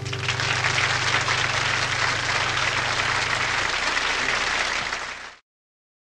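Audience applause breaking out as the song ends, with the last acoustic guitar chord still ringing low beneath it for the first few seconds; the sound cuts off suddenly a little over five seconds in.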